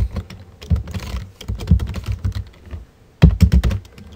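Typing on a computer keyboard: irregular keystrokes, with a quick, louder run of keys about three seconds in.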